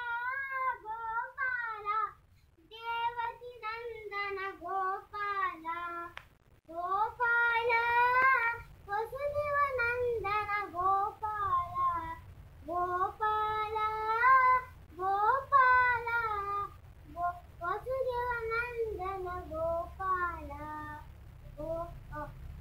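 A young boy singing alone in a high child's voice, in melodic phrases broken by short pauses for breath.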